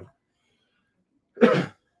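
A man clears his throat once, briefly, about one and a half seconds in.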